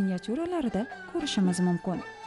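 A person's voice speaking, with faint music underneath.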